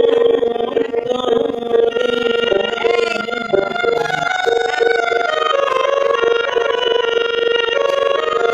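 A harmonium holding a steady reedy note with a woman's voice singing over it, in a Bengali devotional bhajan.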